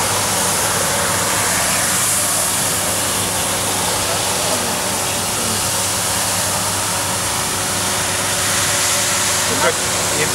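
Fiorentini ride-on floor scrubber running on a wet floor: a steady hiss with a low hum underneath.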